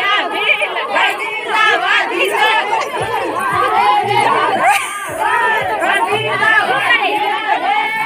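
A group of women singing a Bhili wedding-procession song together, many high voices at once, loud and continuous, with crowd voices mixed in.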